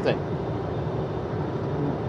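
Steady low rumble with a hiss of background noise, even in level throughout.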